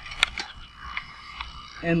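A few sharp metallic clicks from a small hand wrench working the elevation nut on a satellite dish mount as the nut is loosened. The loudest click comes about a quarter second in, and fainter ones follow at uneven gaps.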